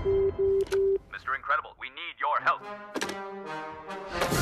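Film trailer soundtrack: a short tone repeats in four quick pulses, then a man's voice strains and grunts, then a held brass chord.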